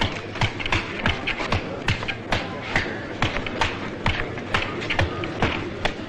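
A rapid run of punches landing on a heavy leather punching bag, sharp thuds coming about two to three times a second.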